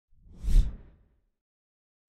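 A single whoosh sound effect with a low rumble underneath, swelling to a peak about half a second in and fading out within a second.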